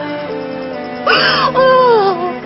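A woman wailing and sobbing, with a loud breathy cry about a second in and a falling wail near the end, over sad background music.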